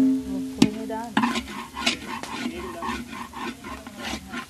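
Food frying in a pan while a utensil stirs it, scraping and knocking against the metal several times, with a low ring from the pan after the harder knocks.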